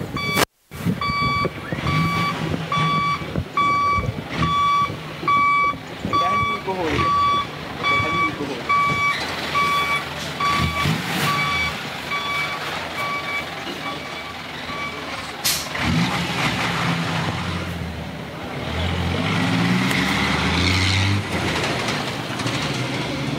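An Isuzu FRR diesel lorry's reversing alarm beeps about twice a second over the idling engine, then stops about 15 seconds in. Near the end the engine revs up, rising in pitch, as the lorry pulls away.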